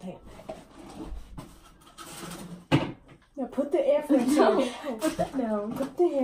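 A single sharp knock about three seconds in, followed by girls' excited voices with high, swooping squeals and no clear words.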